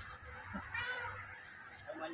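Faint bird calls in the background: a few short pitched calls about a second in and again near the end.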